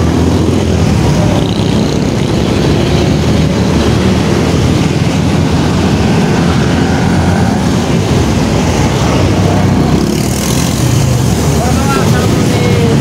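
Steady road traffic passing close by on a busy highway, mostly motorcycle engines, with a truck among them.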